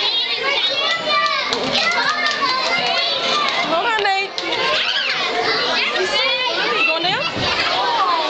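A group of children talking and calling out over one another, many high voices overlapping without a break, with a brief lull about halfway through.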